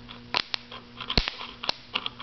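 Pre-charged old-style electrolytic capacitor being discharged across its terminals: about five sharp, irregular snaps of sparking in two seconds, over a faint low electrical hum.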